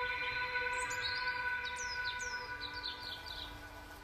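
Birds chirping: a run of short, quick, downward-sweeping calls, repeated several times. Under them a steady high-pitched tone slowly fades away.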